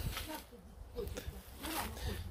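Footsteps scuffing and crunching on a path of gravel and dry leaves, with clothing rustling as the camera is carried; faint voices in the background.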